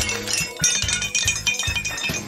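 Instrumental stretch of a song: a steady low beat about twice a second under tinkling bell and chime tones.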